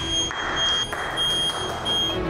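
A high, steady electronic buzzer tone, broken briefly a couple of times, sounding as the substation is switched on from the control-room touchscreen; applause rises under it about a third of a second in.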